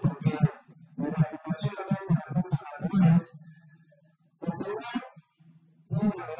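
A man speaking into a handheld microphone over a PA, with a steady low electrical hum underneath and a short pause about two-thirds of the way in.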